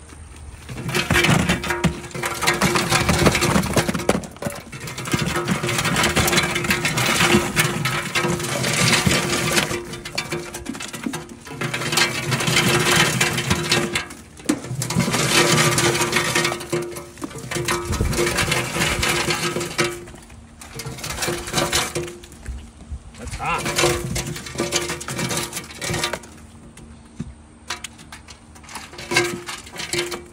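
Boiled crawfish, corn and potatoes sliding down the aluminum dump tray of a crawfish boiler and tumbling into a plastic tub, in surges of a few seconds with short pauses between.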